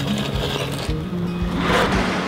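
Background music with a steady beat and held low notes, with a swelling rush of noise near the end.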